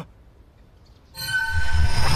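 A sudden loud, shrill creature screech begins a little past the middle, after a quiet start. It is the toad demon's monstrous roar sound effect as his disguise breaks.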